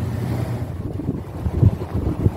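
Low rumble of wind buffeting the microphone, irregular and gusty in the second half, over a steady low hum in the first second.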